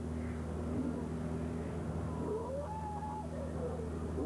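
Steady low hum of a tour boat's motor, with a few brief wavering higher calls over it in the middle.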